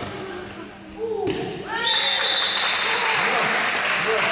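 Shouts in a reverberant sports hall, then, about two seconds in, a long high whistle blast from the referee and spectators clapping and cheering, which carry on to the end.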